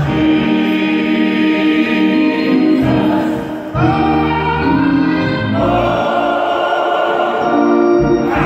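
Small gospel choir singing in sustained chords, accompanied by a keyboard with low held bass notes.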